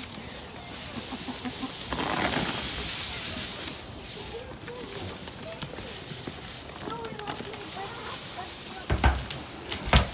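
Loose straw rustling and crackling as armfuls are pulled from a bale and scattered over the ground, with a thump shortly before the end.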